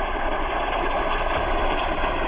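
Steady rushing noise over a telephone line, as loud as the caller's voice.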